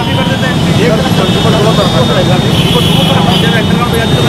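Several men talking, their voices overlapping, over a steady din of street traffic.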